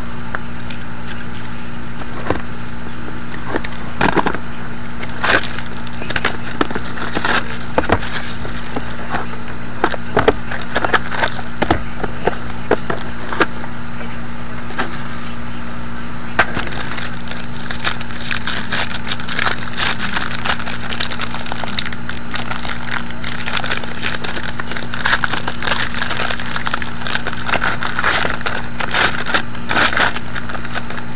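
A cardboard trading-card box being cut open and a foil card pack handled and torn open: scattered sharp clicks and cracks, turning into denser crinkling of foil in the second half. A steady low hum runs underneath.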